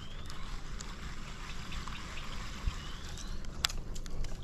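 Steady trickling of water, with a faint rising whistle about three seconds in and a sharp click shortly after.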